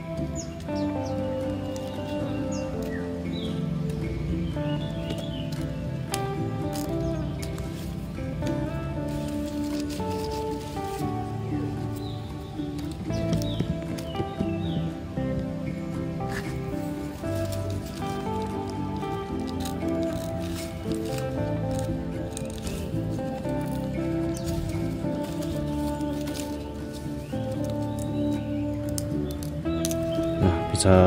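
Background instrumental music with sustained, shifting notes, at an even level throughout.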